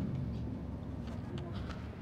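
Light metallic clicks as a brake caliper bolt is handled and threaded in by hand on a scooter's front caliper, over a faint steady low hum.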